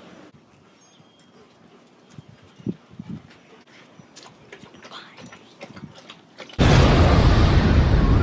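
A loud, distorted explosion sound effect that starts abruptly near the end and cuts off suddenly about two seconds later. Before it there are only faint, scattered small sounds.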